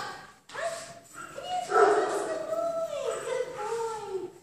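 A young German Shepherd whining and yipping in long, sliding calls, loudest about two seconds in.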